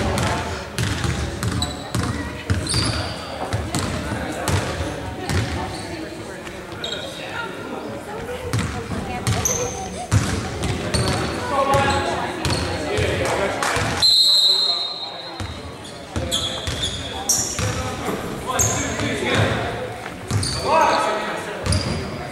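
Basketball bouncing on a hardwood gym floor amid indistinct chatter of players and onlookers, all ringing in the large gymnasium, with a few short high squeaks.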